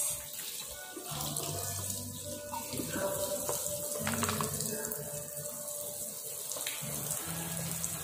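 Tap water running steadily into a stainless steel kitchen sink, with a few light knocks as a plastic colander and vegetables are handled.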